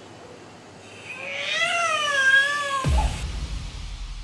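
An infant crying: one long, wavering cry from about a second in until near the three-second mark, when low background music comes in.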